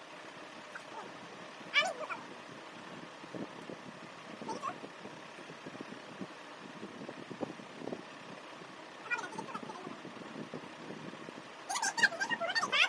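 A few short, high-pitched vocal squeals from a girl, about two, four and a half and nine seconds in, over a faint steady background hiss.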